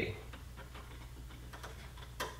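Faint, irregular small clicks and taps of HDMI cable plugs being handled against a plastic HDMI switch box, over a low steady hum.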